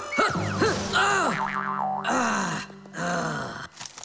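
Cartoon background music with springy, boing-like comic sound effects that swoop up and down in pitch, under a character's wordless grunts.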